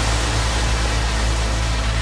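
Electronic trance music: a wash of white noise fills the whole range over a sustained deep bass tone, with no clear beat.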